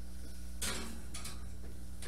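A steady low electrical hum, with one brief soft rustle about half a second in.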